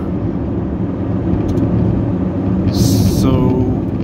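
A car's steady low engine and tyre rumble heard from inside the cabin while driving. About three seconds in there is a short hiss, followed by a brief vocal sound.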